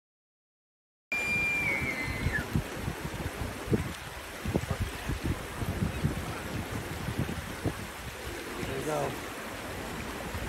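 Silent for about the first second. Then a bull elk bugles: a high whistling call that holds, then steps down in pitch over about a second. A steady hiss with low rumbling thumps on the microphone runs underneath.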